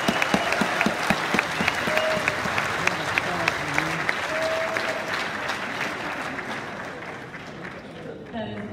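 Audience applauding a speech, many hands clapping fast, dying down over the last few seconds.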